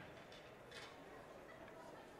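Near silence: quiet room tone with a couple of faint, brief rustles.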